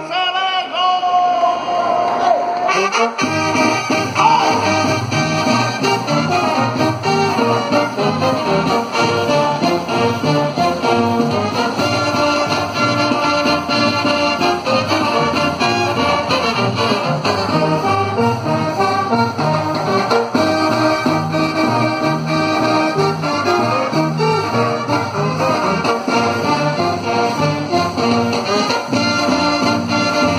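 Live Colombian brass band playing an instrumental passage: clarinets, trumpets, trombones and euphoniums over bass drum and snare. It opens on one held note, then the full band comes in about three seconds in with a steady dance beat.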